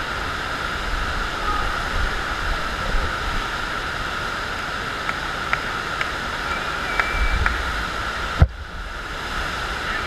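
Steady rush of water from a FlowRider sheet-wave machine, pumped water streaming in a thin sheet up the padded ride surface. A single sharp knock about eight and a half seconds in, after which the rush is briefly quieter.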